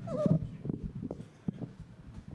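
Microphone handling noise as a vocal mic is adjusted by hand in its clip on the stand: a heavy thud with a brief vocal sound at the start, then several short knocks and bumps.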